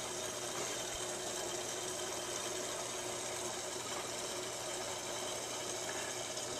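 Aquarium pump running: a steady low hum with a faint hiss of moving water.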